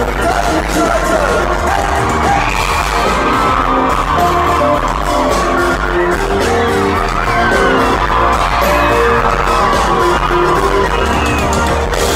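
Loud live electronic pop music from a band with keyboards and drums, with a steady beat, heard from inside the audience. A voice glides without words over the music through the middle.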